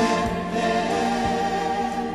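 Background song: layered singing voices held over a slow beat, gradually fading out.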